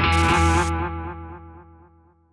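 Theme music ending on a distorted electric guitar chord that rings out and fades away over about two seconds.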